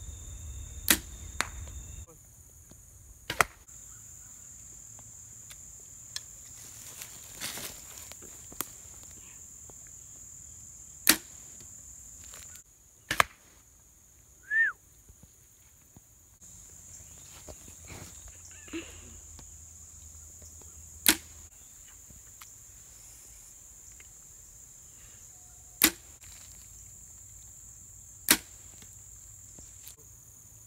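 A Browning Micro Midas compound bow shooting field-tipped arrows, heard as a series of sharp cracks spaced irregularly. A steady high insect drone runs underneath and breaks off at each edit.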